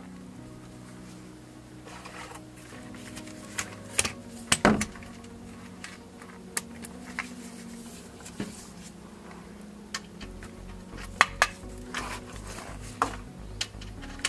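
Scattered metal clinks and taps of a socket and long wrench being handled and fitted to a fastener under the car, over a steady low hum.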